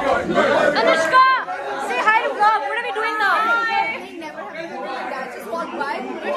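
Several people chattering and exclaiming over one another at once, with no clear words standing out.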